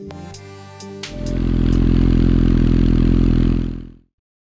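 Background music, then about a second in a 1996 Suzuki GSX-R 750 SRAD's inline-four engine comes in loud through its twin Devil silencers. It runs steadily for a few seconds and fades out near the end.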